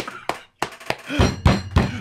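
A run of dull thumps and knocks, coming thicker and heavier in the second half after a brief near-silent gap.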